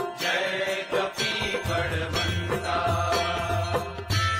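Hindu aarti music: chanted devotional singing over a low steady drone, with repeated sharp strikes of bells and percussion.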